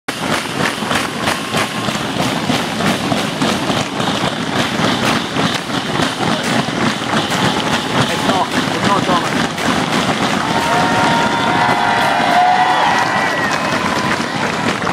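Roadside spectators clapping and cheering at a cycling time trial, with a rapid run of claps or raps throughout. Several long, held calls rise above the crowd near the end.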